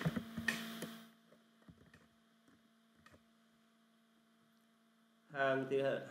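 A few sharp clicks from typing at a computer keyboard in the first second, then a faint, steady low electrical hum. A man's voice starts near the end.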